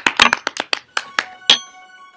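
A small group clapping, quick uneven claps. About a second in, a bell-like ringing tone with several overtones starts, and it fades away near the end.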